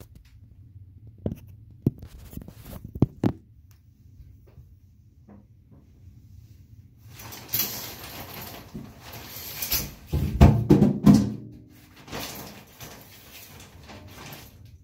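Knocks as the phone is handled and set down, then several seconds of fabric rustle and shower-curtain rings scraping along a metal rod as the curtain and a towel are pulled at, with a few dull thuds.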